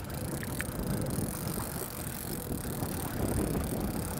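Steady low rumble of wind and water noise at the stern of a trolling boat while a lake trout is netted, with a couple of faint clicks about half a second in.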